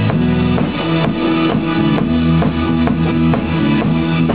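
Live band playing an instrumental passage: a drum kit keeps a steady beat under guitar and keyboard with sustained low notes.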